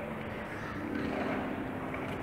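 A steady droning ambient soundtrack with held low tones, which come in more strongly about halfway through.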